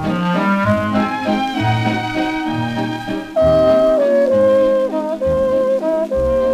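Instrumental break of a 1930s dance orchestra playing a popular song, from a Decca 78 rpm record: quick stepping notes at first, then louder long held notes a little over three seconds in.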